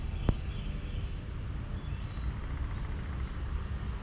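Steady low outdoor rumble with a single sharp click shortly after the start.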